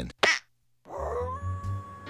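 A short grunt from a cartoon voice, then after a brief silence a dog howling: a long call that rises and then holds one pitch over a low hum.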